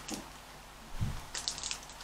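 Plastic fishbowl beads shaken from a small packet into a cup of slime: a soft thump about halfway through, then a quick run of light, crackly ticks.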